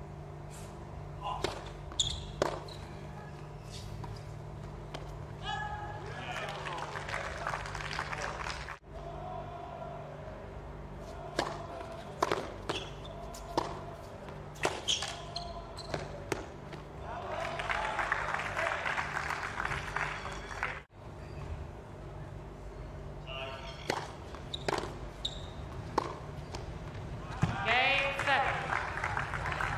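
Tennis ball struck back and forth in rallies on a hard court: sharp racket hits and bounces, with short bursts of spectator applause after points, about a quarter of the way in and again past the middle.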